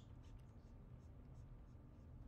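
Near silence: room tone with a steady low hum and a few faint, soft high rustles in the first half.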